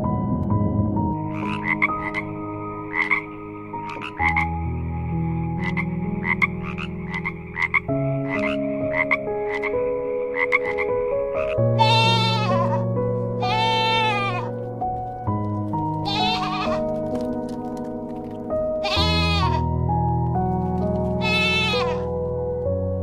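A goat bleats five times from about halfway through, each call long and quavering, over soft background music with held chords. In the first half, short rasping calls repeat about once a second over the same music.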